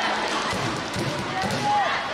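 Busy sports-hall ambience: a mix of voices from around the hall with scattered thuds, carried on the echo of a large room.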